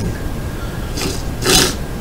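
A man's breathing in a pause between words: two short breaths about half a second apart, the second louder, over a steady low background hiss.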